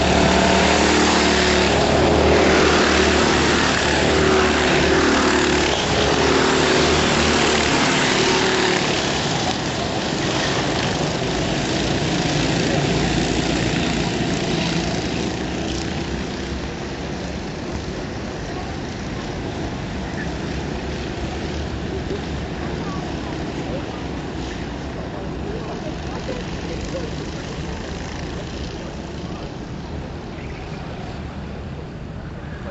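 Racing kart engine at full throttle: loud and close for the first several seconds, then fading steadily as the kart pulls away around the circuit, down to a more distant steady drone for the second half.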